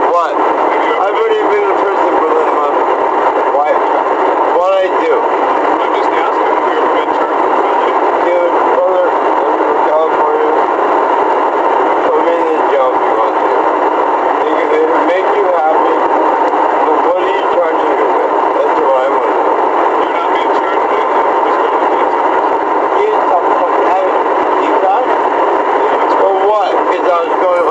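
Indistinct, muffled voices under a steady loud hiss, with a thin, tinny sound and no low end; the words cannot be made out.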